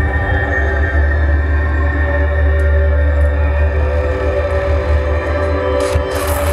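Marching band and front ensemble holding a dark, sustained chord over a deep, steady low drone.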